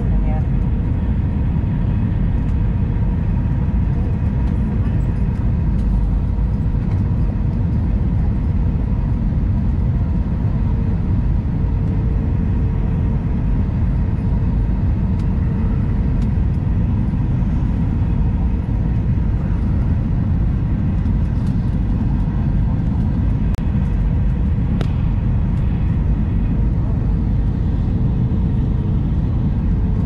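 Airbus A319 cabin noise on approach: a steady low rumble of engines and airflow heard from inside the cabin, with a faint hum that comes and goes.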